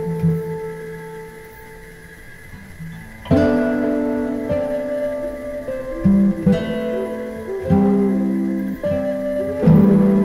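Instrumental background music of plucked strings. It is soft for the first three seconds, then sharp chords are struck about every one to two seconds, each ringing on and fading.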